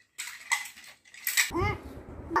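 Plastic toy building blocks clattering and clicking against each other as they are handled, with the sharpest click a little before the end, followed by a child's voice.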